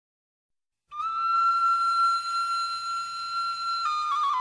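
Solo flute music: silence for about a second, then one long held high note that breaks into a quick ornamented melody near the end.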